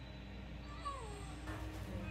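Faint groaning of a wounded man from the episode's soundtrack, a few weak falling moans.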